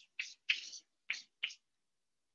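Chalk writing on a chalkboard: four short, high scratching strokes in about a second and a half.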